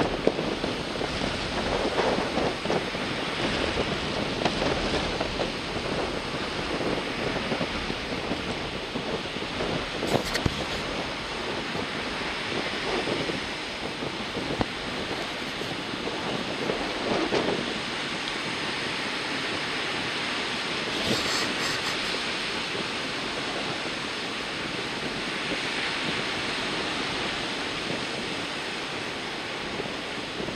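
Wind buffeting the microphone over surf on a rough sea, a steady rushing noise with a few brief clicks.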